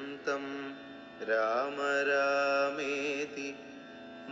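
Devotional song in Carnatic style: a voice sings a short phrase, then, about a second in, rises into a long, ornamented held phrase with a wavering tone, over steady accompaniment.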